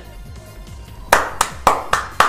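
A man clapping his hands four times in quick succession, starting about halfway through, over faint background music.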